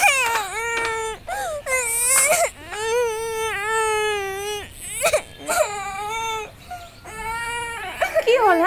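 A young boy crying hard, in a string of high-pitched, drawn-out sobbing cries. The longest is held for about two seconds in the middle, and short breaks come between them.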